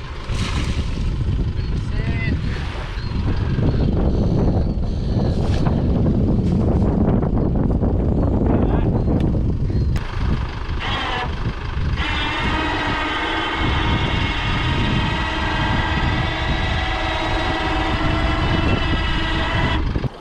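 An electric winch motor starts about twelve seconds in and runs with a steady whine while it hauls an aluminium dinghy up onto a ute's roof racks, cutting off suddenly at the end. Before it there is a low rushing noise, with wind on the microphone.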